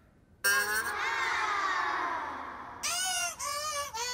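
A person's voice: one long cry that starts about half a second in and falls in pitch over about two seconds, followed by a few short vocal bursts near the end.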